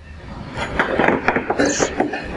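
Handling noise: rustling with a string of small knocks and rubs as a Soxhlet extractor's condenser and its rubber water hoses are picked up off a steel bench, building up about half a second in.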